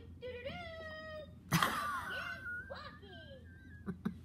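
Small Corgi/Chihuahua mix dog whining in high, gliding cries. A short sharp yip about one and a half seconds in is the loudest moment, followed by more drawn-out whines.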